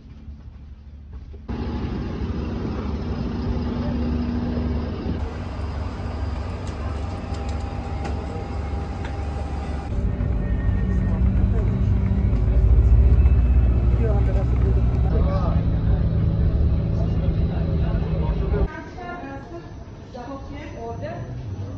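A steady low vehicle rumble with indistinct voices of people talking, made of several short clips that change abruptly in level. The rumble is loudest in the second half.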